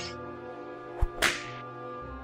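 Cartoon hit sound effect over sustained background music: a sharp hit about a second in, followed almost at once by a longer, hissing crack.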